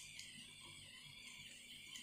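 Near silence: a faint, steady high hiss.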